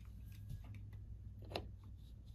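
Screwdriver tip clicking against the terminal screws of a Honeywell T87 thermostat's metal-and-plastic base plate: a faint click about half a second in and a sharper one about one and a half seconds in, over a low steady hum.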